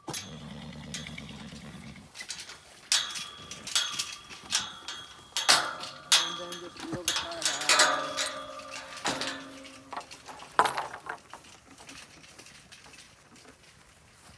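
A metal pasture gate and its chain being worked, then a loaded garden cart rattling as it is pulled over grass, with sharp clinks and knocks from the stacked feed pans and bucket riding in it. A low steady buzz is heard for about the first two seconds.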